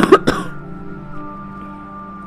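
A person coughs twice, sharply, right at the start, over background music of steady held notes that carries on after the coughs.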